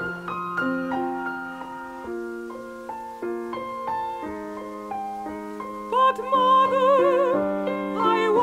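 Piano playing a solo passage between sung phrases, with notes and chords moving stepwise. A mezzo-soprano voice with wide vibrato comes back in about six seconds in.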